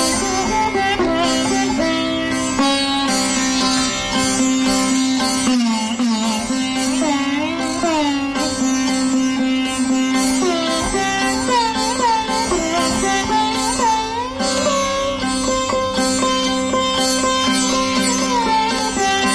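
Sitar playing Raga Bibhas: a plucked melody with many notes bent up and down along the string (meend), over the steady ring of the drone and sympathetic strings.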